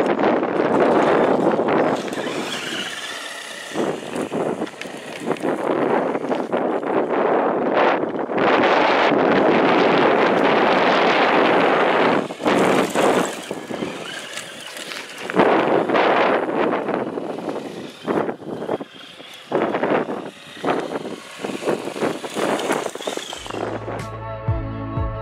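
Electric RC Humvee running on a three-cell LiPo, driven over gravel: a loud, noisy rush of tyres on gravel and wind on the microphone that swells and drops as the truck speeds up and slows, with brief whines from the motor.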